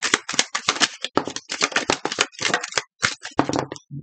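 A hand-held deck of small paper cards being shuffled: a rapid, irregular run of papery snaps and rustles as the cards slide and slap together.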